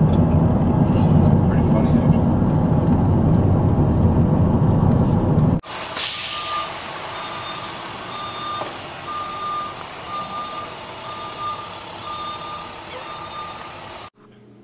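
Road noise from inside a moving car, which cuts off about five and a half seconds in. Then a short loud hiss, followed by a vehicle's reversing alarm beeping evenly, nearly twice a second.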